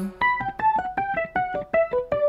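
A digital piano playing a quick run of single notes, about seven a second, stepping down in pitch: an instrumental fill in a jazz ballad.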